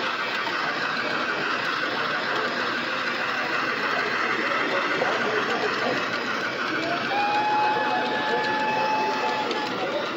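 Model steam locomotive and coaches running along a layout's track, a fine rapid clicking over the steady murmur of a crowded exhibition hall. A steady high tone comes in about seven seconds in.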